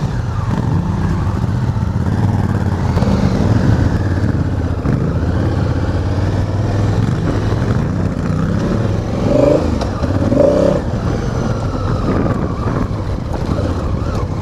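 Honda Africa Twin's parallel-twin engine running at low speed under the rider, its pitch rising and falling with the throttle as the bike moves off along a loose gravel and dirt track.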